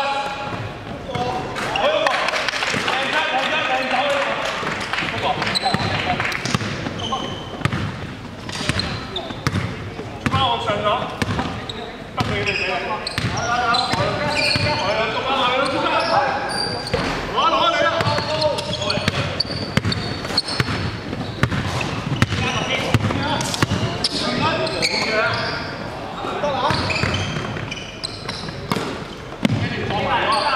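Basketball game in a sports hall: the ball bouncing and hitting the hardwood floor again and again among players' shouts and calls, which echo in the large room.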